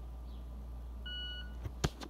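Victor Reader Stream talking-book player giving a short electronic beep about a second in, while its power key is held down for a reset. A sharp click follows near the end, over a low steady hum.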